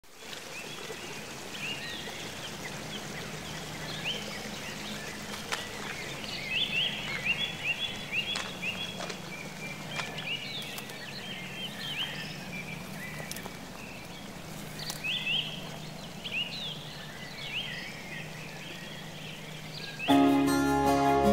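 Forest stream rushing over rocks, a steady wash of water, with small birds chirping over it.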